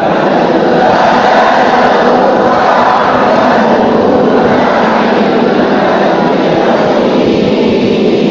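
A large group of voices reciting a Quran verse together in unison, blending into a dense, steady roar.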